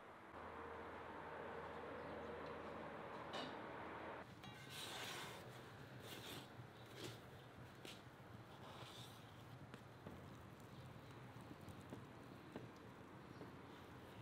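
Faint cooking sounds. A few seconds of steady quiet air give way to light taps, clicks and short scrapes as a wooden spatula works flatbread in a steel frying pan on a wood stove, over a low steady hum.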